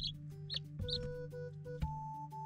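Three short, high peeps from baby chicks in the first second, over background music.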